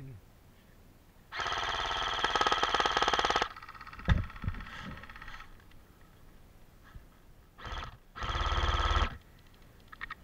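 Electric airsoft rifle (AEG) firing full-auto: a rapid buzzing rattle of about two seconds, then a brief burst and a second burst of about a second near the end. There is a single thump about four seconds in.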